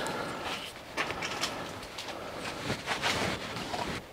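Outdoor background noise, an even hiss-like haze, with a few short clicks or knocks scattered through it.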